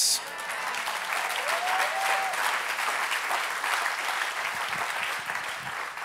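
Church congregation applauding steadily, with one voice calling out briefly about a second and a half in; the clapping tapers off slightly near the end.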